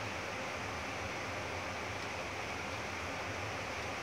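Steady, even background hiss with no distinct sounds in it: outdoor ambient noise.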